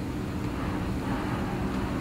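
Steady low hum of room noise, with no speech and no sudden sounds.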